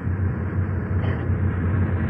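Steady low drone of a running tour bus engine, heard from inside the bus on a lo-fi cassette recording.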